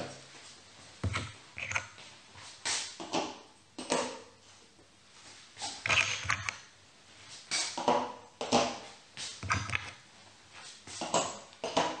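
Go stones clacking onto a magnetic Go demonstration board and against each other as they are handled and placed: irregular sharp knocks with a short ring, about one a second.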